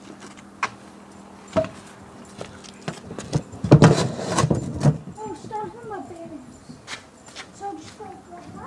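Stunt scooter's wheels and deck clattering on a ramp: a few single clicks, then a dense run of knocks and rattles about halfway through, the loudest sound here.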